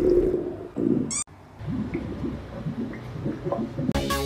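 Cartoon sound effects: a short burst with a quick rising whistle about a second in, cut off suddenly, then soft irregular low blips and squiggles.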